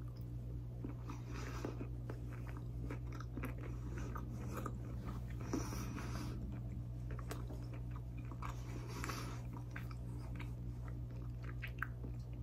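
A person chewing a crunchy snack with the mouth closed, in a run of faint, irregular crunches.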